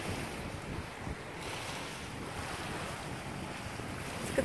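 Steady wind buffeting the phone's microphone, a fluctuating low rumble over an even rush of wind and small waves washing on a gravel shore.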